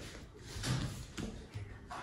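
A deck of Baralho Cigano cards being spread out across a cloth-covered table by hand: faint, soft sliding.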